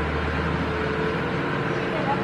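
Steady outdoor background din with faint distant voices, no distinct event standing out.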